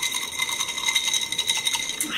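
Ice cubes rattling and clinking inside a glass of agua fresca as the glass is shaken, giving a fast, continuous clatter of small clicks.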